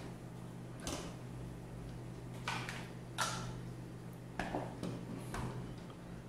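Light clicks and taps of small metal air-rifle parts being handled and set down on a table, about five scattered over a few seconds, over a faint steady hum.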